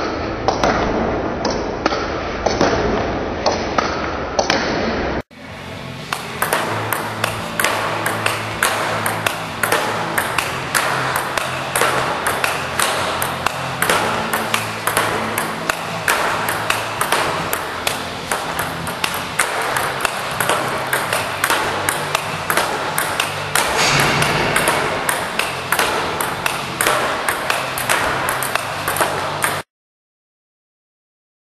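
Celluloid-type table tennis ball clicking rapidly off the bat, the table and a rebound board in a fast solo rally, several sharp clicks a second in an even rhythm. The sound drops out briefly about five seconds in, resumes, and stops abruptly just before the end.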